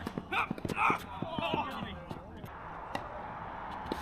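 Players' voices calling across a tennis court, with a few scattered sharp taps of tennis balls bouncing and being handled between points.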